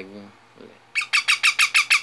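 Baby parrot calling in a rapid, even run of short, high squawks, about seven a second, starting about a second in. A man's voice trails off at the very start.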